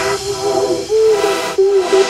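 Opening of an electronic drumstep track before the drums come in: a sustained synth tone stepping between a few notes, over a hissing white-noise swell that rises and falls.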